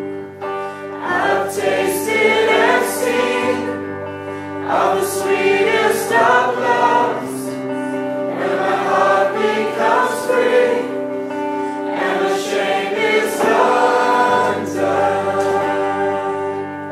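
A woman singing a worship song into a microphone, accompanied by an electric guitar holding sustained chords under the vocal phrases.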